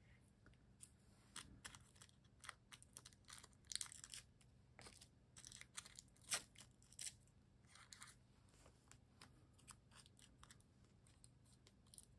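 Thin polka-dot paper being torn by hand into small pieces and handled on a book page: faint, scattered paper rustles and small tearing sounds, the loudest about six seconds in.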